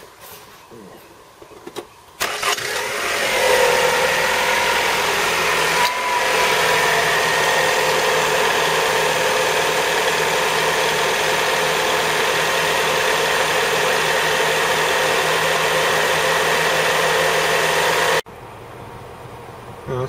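Toyota Camry engine starting about two seconds in and settling into a steady idle with a whine, which the mechanic puts down to the cams. The engine is running on fresh oil after a heavy sludge clean-out. The sound drops away sharply near the end.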